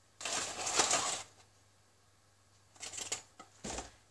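Paper and cardboard rustling as icing sugar is shaken from its box into a bowl, for about a second. More rustling follows near the end, with a soft thump as the box is set down on a wooden board.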